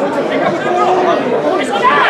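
Several voices talking at once in overlapping chatter, most likely spectators near the camera.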